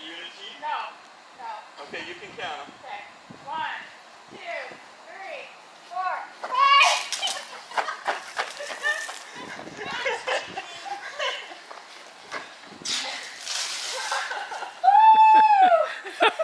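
Water blasters firing in a backyard water-gun duel: two hissing stretches of spray, about six and thirteen seconds in, amid excited voices. A loud rising-and-falling shriek comes near the end.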